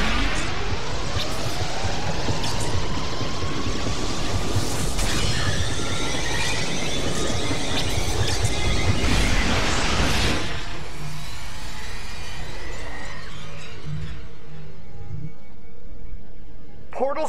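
Science-fiction energy sound effects of a portal being torn open, with a rising whine over the first few seconds and dense crackling surges, under a music score. It thins out after about ten seconds.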